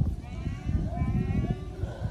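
One long, wavering, high-pitched call, faint against a low rumble, rising slightly as it goes; it could come from an animal or a person.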